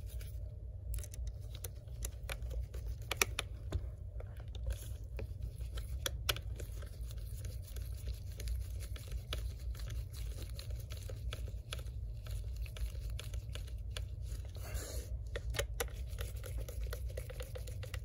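Small scattered clicks and scratches of a precision screwdriver turning hinge screws into a MacBook Air's aluminium case, with gloved hands handling the laptop, over a steady low hum.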